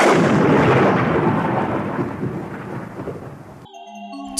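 A loud thunder-like boom sound effect, rumbling noise that fades away over about three and a half seconds. It cuts off sharply, and a few notes of music start just before the end.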